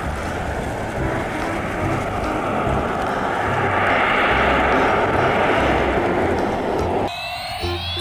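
Engine noise of a pair of Canadair amphibious water-bombers flying by. It is a steady drone that swells to its loudest around the middle and eases off again, then cuts off suddenly about seven seconds in.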